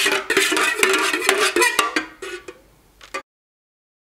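A utensil stirring and scraping inside an aluminium candle-pouring pitcher, with quick repeated metallic clinks and scrapes as liquid dye is mixed into melted soy wax. The clinking thins out after about two seconds, and the sound cuts off abruptly a little past three seconds.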